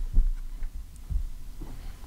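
Two short, low thumps, one just after the start and a softer one about a second in, over a faint low hum, in a pause between speakers.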